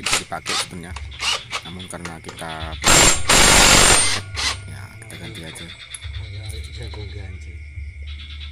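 A cordless impact wrench runs in one loud rattling burst of about a second, about three seconds in, driving the nut on a Yamaha NMAX scooter's CVT pulley, amid light clicks of tools.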